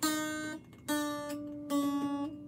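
A single string of a Stratocaster-style electric guitar plucked three times, each note ringing and fading. The string has been slackened at its tuning peg, so it sounds a lower pitch, and the pitch drops a little after the first pluck.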